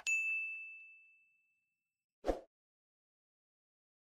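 End-screen sound effects: a click followed straight away by a single notification-bell ding that rings on and fades out over about a second and a half. A short, soft thump follows a little over two seconds in.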